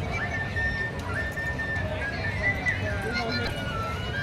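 A high, whistle-like note held steady twice, then wavering and sliding downward, over background voices and noise.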